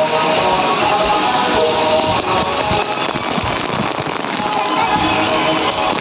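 Water spraying and pouring down from a water-park play structure, a steady rain-like hiss, with music playing over it.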